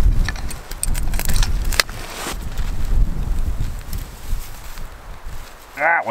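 Wind rumbling on the microphone, with scattered sharp clicks and crackles in the first two seconds or so from a small birch-bark kindling fire and twigs being handled.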